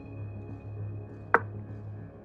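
Calm background music with a steady low hum, and a single sharp click about halfway through: the chess board's piece-move sound effect as a move is played.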